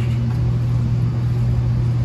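A steady low hum with an even level and no change.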